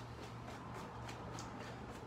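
Faint footfalls on a floor from a quick forward-and-back boxing footwork drill, over a steady low hum.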